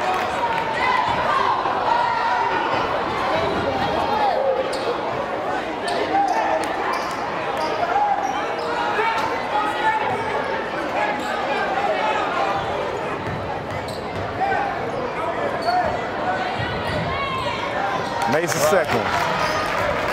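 Basketball bouncing on a hardwood gym floor as a free-throw shooter dribbles before his shot, over the steady chatter of a crowd of spectators in the hall. Near the end, a run of sharp, high sneaker squeaks on the court as play resumes.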